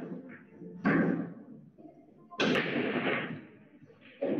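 Loud knocks in a large, echoing room: two sharp impacts about a second and a half apart, each ringing out briefly.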